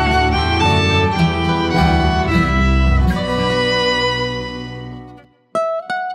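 Acoustic folk instrumental with fiddle leading over strummed acoustic guitar and bass. About three seconds in, the ensemble lets a final chord ring and fade out. After a brief silence, a single held note begins the next phrase near the end.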